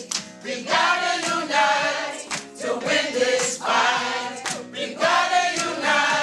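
A crowd of many voices singing together in sung phrases, with a few sharp hits among them.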